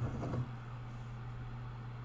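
Steady low hum with faint hiss: background room tone, with a brief faint low sound in the first half-second.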